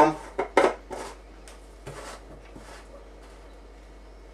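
Plastic screw cap being twisted down onto a homebrew beer barrel: a series of short plastic scrapes and clicks that thin out after about two and a half seconds.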